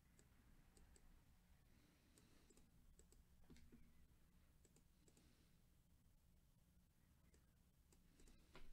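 Near silence, with faint scattered clicks of a computer mouse.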